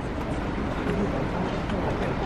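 Steady outdoor background noise with faint, indistinct voices of people walking nearby.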